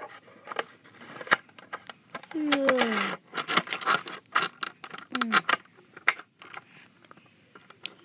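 Clicks and taps of a die-cast toy stock car and a plastic playset being handled. A short vocal sound falls in pitch about two and a half seconds in, and a briefer one comes near five seconds.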